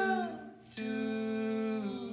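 A singing voice holding two long notes, with a short break between them about a third of the way in. The second note dips in pitch as it ends, and there is little backing.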